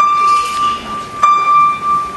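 Grand piano: a single high note struck twice, about a second and a quarter apart, each time ringing on clear and steady.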